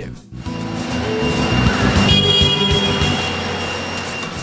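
Electric walk-behind pallet jack driving across a concrete floor: a motor whine and a rolling rumble, with a steady high tone joining about halfway through, over background music.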